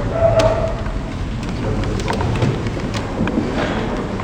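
Rustling with scattered clicks and knocks as a cloth shoulder bag is handled, over a steady low rumble.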